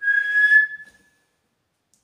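A man whistling one steady high note through pursed lips for about a second.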